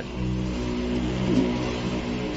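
Low, steady drone of several held tones from a horror film's soundtrack.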